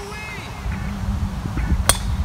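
A golf club striking a teed-up ball: a single sharp crack of a tee shot near the end, over a steady low rumble.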